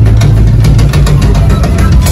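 Live rock band playing loud, with a heavy distorted low end and repeated drum hits running through.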